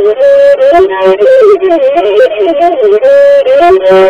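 Traditional Ethiopian azmari music: a melody on the masinko, the one-string bowed fiddle, in wavering, ornamented held notes that step up and down.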